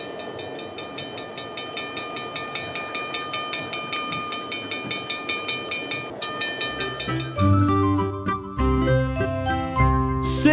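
Cartoon steam-train sound effect: a rhythmic chugging with a steady high ringing tone over it as the locomotive pulls in. About seven seconds in, music with a bass line takes over.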